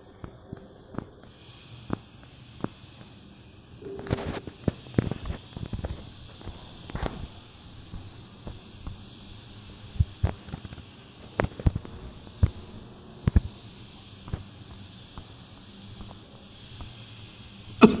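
Irregular light taps and clicks of fingers on a phone touchscreen, picked up by the phone's own microphone while chords are picked in a guitar app, with a short rustling burst about four seconds in.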